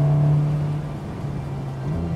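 Ferrari Portofino M's 3855cc turbocharged V8 running at a steady engine speed, heard from the open cockpit; its level drops somewhat about halfway through.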